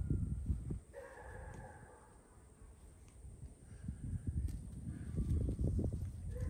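Wind buffeting the microphone in uneven low gusts, strongest at the start and toward the end. About a second in, a faint drawn-out pitched call lasts about a second.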